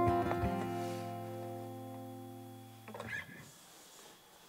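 Steel-string acoustic guitar's closing chord, strummed a few times and left to ring, slowly fading away. The ringing stops abruptly about three seconds in, followed by a brief rustle.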